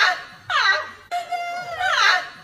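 A young woman's high-pitched laugh: squeals that fall steeply in pitch, three of them in two seconds, with a held note in the middle.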